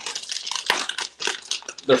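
Plastic bag of Berkley PowerBait MaxScent soft-plastic worms crinkling, a quick run of crackles, as the freshly opened bag is handled and rummaged through.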